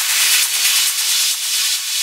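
Progressive trance track in a filtered build: a hissing white-noise sweep with a faint pulsing rhythm, the bass and low end cut away, leading up to the return of the full beat.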